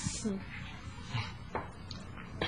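A short vocal sound from a person right at the start, its pitch falling, then low room noise with a faint click about one and a half seconds in.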